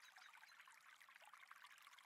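Near silence: only a faint, steady hiss from the ambient sound bed, with no distinct events.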